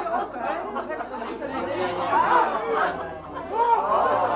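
Several people talking at once: the chatter of a seated audience in a room.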